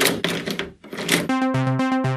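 Slot machine sound effects: a noisy, clattering burst with rapid clicks that fades out. About a second in, a quick electronic jingle of short beeping notes starts up.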